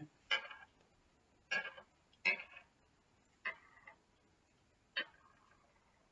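Small charms and beads clicking as they are handled and dropped onto a wooden table: five light, separate clicks about a second apart.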